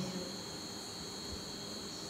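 Faint, steady high-pitched trilling of crickets over low background hiss.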